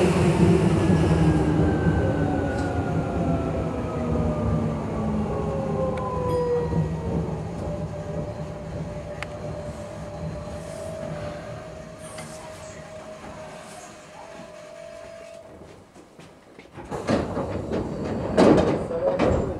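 Tokyu 8500 series electric train braking to a stop, heard from the cab: the traction motor whine falls in pitch and fades as it slows, and a steady tone holds briefly before it halts about 15 seconds in. Near the end comes a loud rush of door noise as the doors open.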